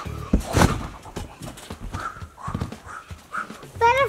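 Two heavy thuds of feet landing on a trampoline mat, followed by a run of irregular thumps and knocks from running footsteps.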